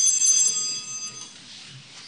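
A small metal bell rings with several clear, high tones, sounding for about a second and a quarter before it stops.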